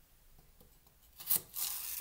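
Cook's knife slicing lengthwise through a celery stalk on a chopping board: one sharp snap a little over a second in, then a steady rasping scrape as the blade draws through the stalk.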